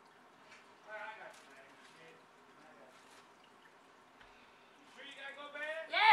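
Mostly quiet, with faint muffled voice sounds, then near the end a person's voice rises, long and drawn-out.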